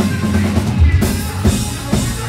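Melodic hardcore band playing live and loud, with drum-kit hits (kick and snare) prominent over heavy low guitars and bass.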